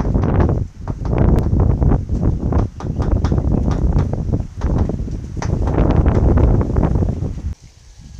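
Wind buffeting the microphone in heavy, gusting rumbles, mixed with scattered sharp clicks and knocks. It cuts off suddenly near the end.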